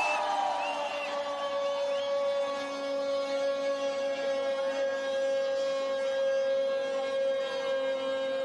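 A soldier's drawn-out shouted parade command: one long note held at a steady pitch without a break. A few whoops from the crowd rise and fall over it in the first couple of seconds.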